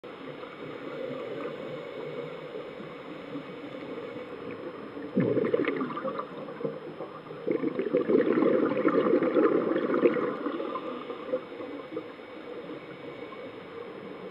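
A scuba diver's exhaled bubbles rushing out of the regulator, heard underwater. There is a short burst about five seconds in, then a longer one of about three seconds soon after, over a steady low hiss.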